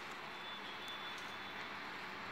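Steady outdoor street background noise, like distant traffic, with a faint thin high tone lasting about a second in the middle.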